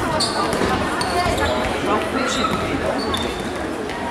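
Indoor football played on a sports-hall floor: a ball being kicked and bouncing, a few short high squeaks, and players' voices ringing around the hall.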